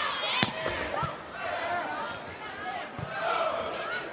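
Volleyball being struck during a rally in an arena: a sharp hit about half a second in, another near one second and a third near three seconds, over steady crowd noise with scattered voices.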